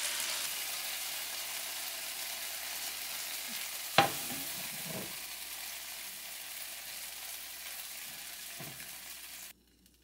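Stir-fried squid in black bean sauce sizzling from the hot wok, a steady hiss that slowly fades. A sharp knock of the utensil comes about four seconds in, and the sound cuts off suddenly near the end.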